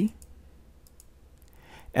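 A few faint computer mouse clicks over low room noise.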